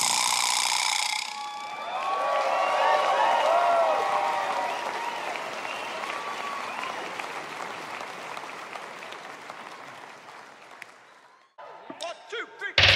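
A concert audience applauding and cheering, with shouts in the crowd, after a song ends. It swells about two seconds in, then fades steadily away and drops out just before the end.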